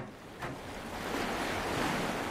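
Ocean surf: rushing, splashing seawater that builds about half a second in and then holds steady.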